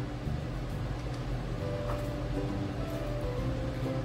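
Soft background music with held notes over a steady low hum.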